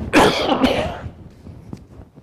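An elderly man coughs into his hand: one loud, harsh cough lasting under a second, just after the start.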